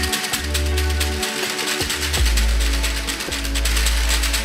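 Rapid, continuous mechanical rattling from a cylindrical-cell battery pack in aluminium serpentine cooling tubes, fitted without silicon pads, as it is shaken in a shock and vibration test. Background music with a heavy bass plays along with it.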